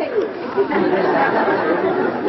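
Many voices talking at once: overlapping audience chatter, steady throughout, with no single voice standing out.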